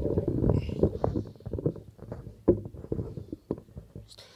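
Handling noise on a handheld microphone as it is picked up and adjusted: irregular low bumps and rubbing, dying away near the end.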